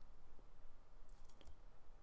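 A few faint clicks from a computer mouse, mostly in the middle, as a line is drawn in a paint program, over a low steady room hum.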